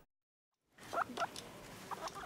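After a brief silence, a guinea pig gives a few short, high squeaks.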